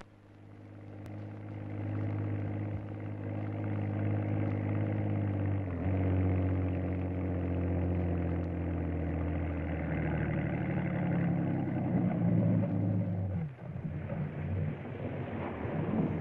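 Motorboat engine running steadily with a deep hum, fading in at the start. About thirteen and a half seconds in, the steady tone stops and a rougher, noisier sound follows.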